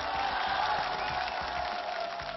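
Studio audience clapping and cheering, with music underneath.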